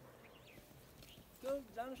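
Faint outdoor background, then a person's voice starts speaking about one and a half seconds in.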